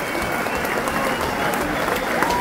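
Concert audience applauding in a hall, a steady wash of clapping.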